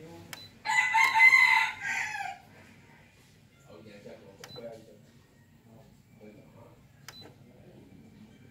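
A rooster crows once, loud, lasting close to two seconds near the start. Light clicks of the stereo's front-panel buttons being pressed come just before it and twice later.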